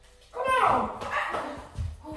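A person's wordless cry that falls in pitch, followed by further broken vocal sounds, as two people scuffle.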